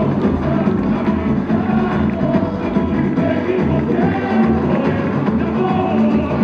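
Samba-enredo from a samba school parade: the bateria's drums and percussion keep a steady beat under the sung melody, played loud over the avenue's sound system.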